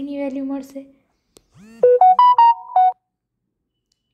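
A smartphone's short electronic alert tune: about six quick stepped notes, mostly rising, lasting a little over a second and loud, starting about a second and a half in after the speaking voice stops.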